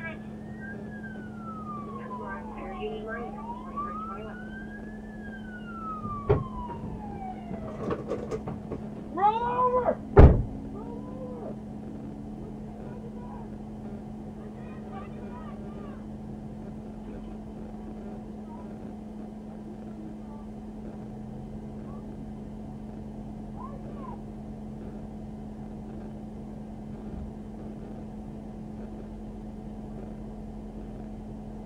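Police siren wailing, sweeping slowly up and down in pitch twice over the first eight seconds, with a steady low hum underneath. A thump comes about six seconds in, then a few short pitched cries and a sharp, loud knock about ten seconds in, the loudest sound.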